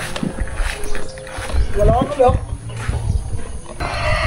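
A cow in a livestock truck lowing in a low, drawn-out moo that starts about one and a half seconds in.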